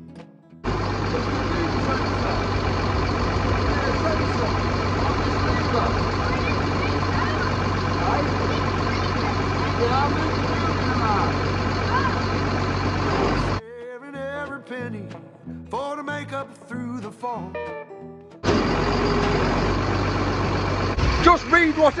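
Lorry engine running steadily, driving the hydraulics of a Palfinger loader crane while the boom extension is worked in and out to test for an intermittent spool-valve sensor fault. For a few seconds past the middle the engine drops away and only music with a singing voice is heard, before the engine sound returns.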